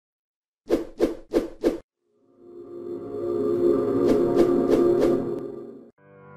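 Intro jingle: four quick percussive hits about a third of a second apart, then a swelling musical chord with four more evenly spaced hits on top, fading out just before the end.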